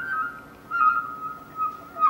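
Sogeum, the small Korean bamboo transverse flute, playing a soft, pure high melody line: a held note that steps down to a lower pitch about two-thirds of a second in, swells and then fades, with no drum stroke under it.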